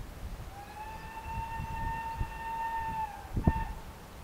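Whistle of Southern Railway U Class steam locomotive 31806: one long steady blast of about two and a half seconds, then a short second blast. Low thumps sound under it, the strongest just after the long blast.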